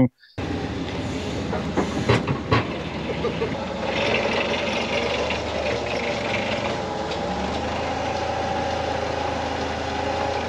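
Forklift engine running steadily while it lifts and carries a Jeep on pallets, with a couple of knocks about two seconds in.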